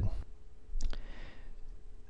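A single computer mouse click a little under a second in, over a faint steady hum.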